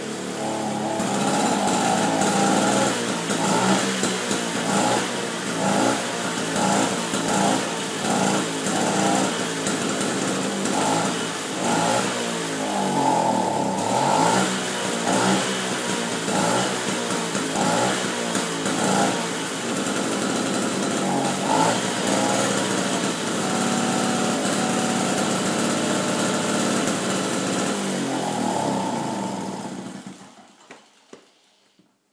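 1965 Raleigh Runabout moped's small single-cylinder two-stroke engine running on its stand, revved up and down over and over with the pitch rising and falling. It shuts off at the very end.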